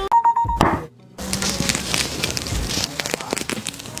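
A music cue ends on a held tone. After a short silence comes crackling and tearing with many small clicks, the sound of orange peel being pulled away from the fruit by gloved hands.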